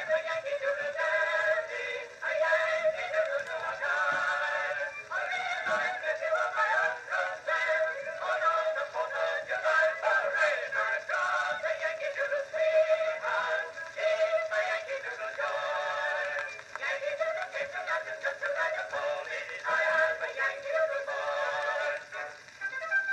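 A mixed chorus singing a medley of old popular songs, played back from a Blue Amberol cylinder on an acoustic Edison cylinder phonograph. The sound is thin and nasal, with no bass, over a faint surface hiss.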